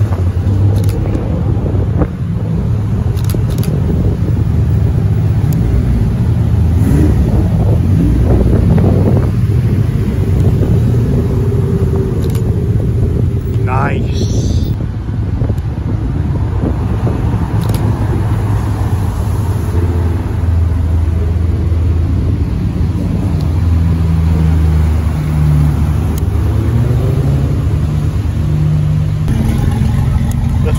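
Cars driving out one after another on a wet road, their engines and exhausts giving a loud, continuous low rumble. A short rising whistle is heard about halfway through.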